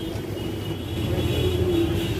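Busy street and market din: a steady traffic rumble, with a thin high tone held for over a second from about a third of a second in.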